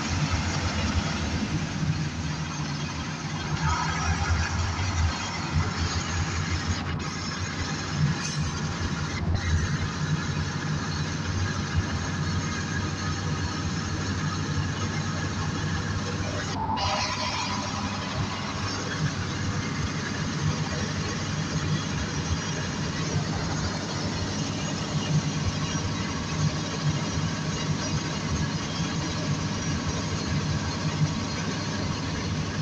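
A NefAZ 5299 city bus running, with its engine's steady low drone and road noise. Two brief squeaks come about 4 and 17 seconds in.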